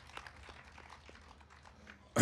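Near silence over a steady low hum through the PA microphones, with scattered faint clicks and rustling.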